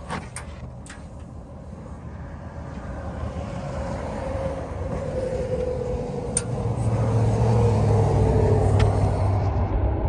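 A motor vehicle's rumble that builds gradually over several seconds and is loudest near the end, with a deep hum and a slowly falling tone, as a vehicle approaches or passes. A few handling clicks come in the first second.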